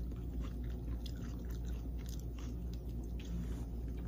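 Someone chewing a soft pork bao bun with pickled cucumber close to the microphone: a scatter of small wet mouth clicks and smacks over a steady low hum.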